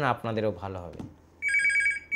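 Corded desk telephone ringing with an electronic warbling trill: one ring starts about halfway through and breaks off just before the end, signalling an incoming call.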